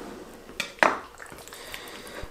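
Fillet knife laid down on a wooden cutting board, with a faint knock followed by a sharper one a little under a second in.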